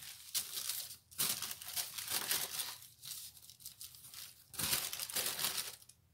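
Clear plastic sticker sheet crinkling as a sticker is peeled from its backing, in a few rustling bursts, the loudest near the end.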